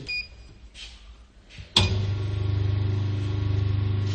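A brief faint beep, then a little under two seconds in an electric machine switches on suddenly and runs with a loud, steady mains-type hum.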